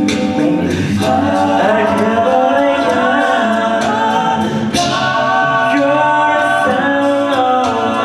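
A cappella group of male voices singing live in close harmony, holding sustained chords over a sung bass line.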